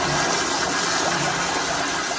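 Commercial toilet with a chrome manual flushometer valve flushing: loud, steady rush of water swirling through the bowl in mid-flush.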